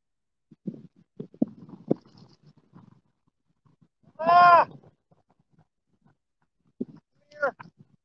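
A man's strained vocal groans while hauling against a heavy fish on a long rod: one loud, drawn-out cry that rises and falls about four seconds in, and a shorter falling cry near the end. Scattered knocks and clicks of handling come in the first few seconds.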